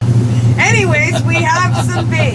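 Motorboat engine running with a steady low drone, heard from inside the boat's cabin. A woman's laughing voice comes over it from about half a second in.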